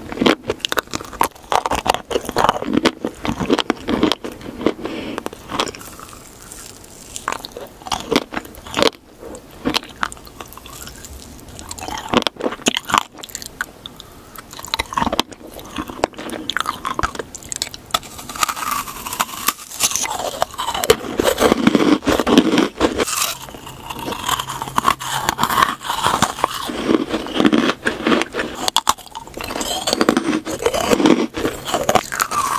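Close-miked chewing of a sprinkle-coated chocolate cake pop, with many small irregular clicks and crackles from the sprinkles and wet mouth sounds.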